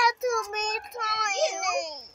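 A young girl singing in a high voice, in several short phrases whose pitch slides up and down.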